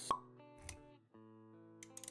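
Intro music with sustained notes, overlaid by a short sharp pop just after the start and a soft low thump a little over half a second in: sound effects for an animated logo reveal. The music briefly drops out about a second in and comes back with new notes.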